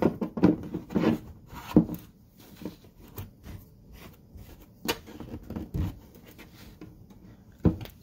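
PVC pipe fittings handled on a plywood bench: a plastic union nut screwed together by hand. Plastic rubbing and scraping, busiest in the first two seconds, then a few scattered clicks and a sharp knock near the end.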